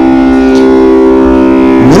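Tanpura drone in the key of C, a loud steady cluster of sustained tones ringing on without a break.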